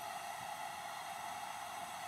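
Steady, faint hiss with no distinct events.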